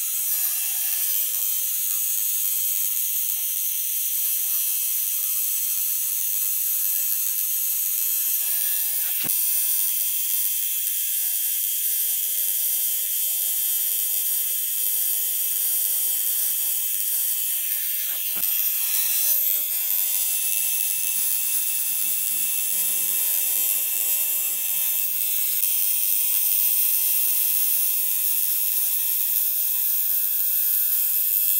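Cartridge pen tattoo machine running steadily with a high, even buzz as the needle lines ink into the skin of a forearm.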